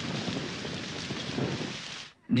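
Rain falling steadily, an even dense hiss with no other event standing out.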